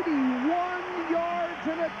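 Stadium crowd cheering a touchdown, a steady roar, with a long drawn-out shouting voice over it.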